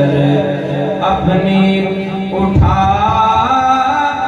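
A man reciting a naat, singing into a microphone with long held notes that waver and bend in pitch.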